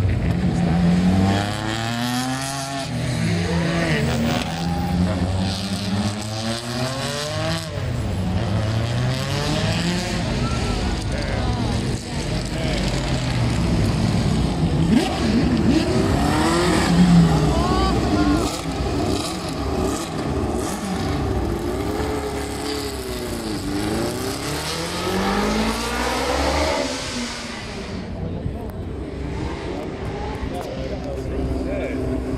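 Racing cars driving past at speed one after another, engines revving up and down with the pitch sweeping as each goes by. A rally car passes early and a historic Formula One car passes in the middle.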